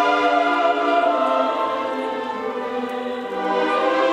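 A symphony orchestra with choir performing a slow, sustained passage of a classical cantata: held string and wind chords under voices. The music eases a little past the middle and swells again near the end.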